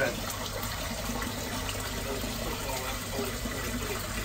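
Steady rushing of water running in a manhole, over a low steady hum.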